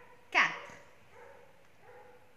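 A woman's voice says a single counted word, "quatre", sharply about half a second in. Otherwise only quiet room tone with a faint steady hum.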